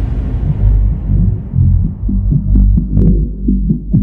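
Minimal electronic dance music with the treble filtered away over the first second or so, leaving a deep, pulsing bass line. Sharp ticking percussion comes in during the second half.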